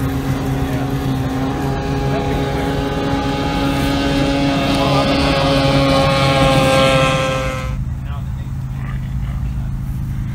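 Racing outboard engine on a hydroplane running at a steady speed, growing slightly louder, its higher tones cutting off suddenly near the end while a low rumble goes on.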